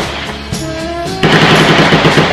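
Background music with held melodic notes, cut across about a second in by a loud burst of rapid automatic gunfire lasting about a second.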